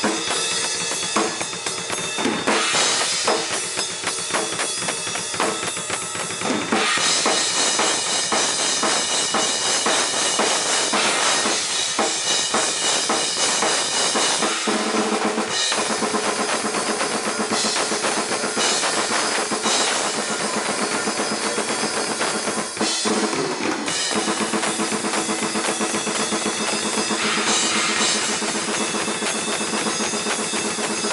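Acoustic drum kit played at a fast metal tempo: rapid bass drum and snare under a near-constant wash of cymbals, with the pattern changing several times, including blast beats.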